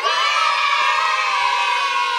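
Many voices cheering together in one long held shout, steady for about two seconds.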